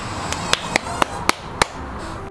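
A series of about six sharp taps, irregularly spaced over about a second and a half.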